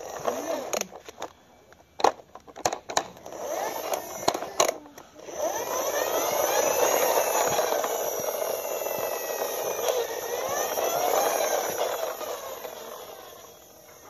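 A plastic toy fire truck clicks and knocks as it is handled for the first few seconds. Then comes a sustained whirring with a wavering pitch that lasts about seven seconds.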